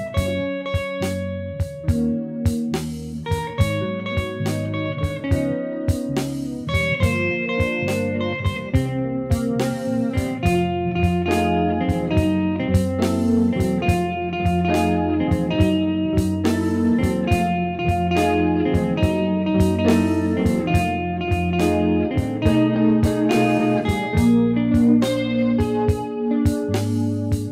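Epiphone Sheraton semi-hollow electric guitar playing a slow jazz-blues instrumental passage in picked notes and chords.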